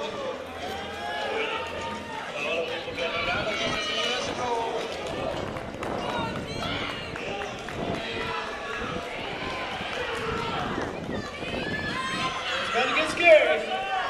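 Indistinct overlapping voices of skaters and spectators echoing in a gym hall, over the steady roll of roller skate wheels on the floor, with a louder shout near the end.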